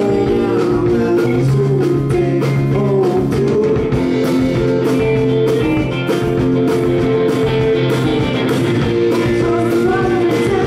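Live rock band playing electric guitars and a drum kit, with a sung vocal line, picked up from the audience in a club.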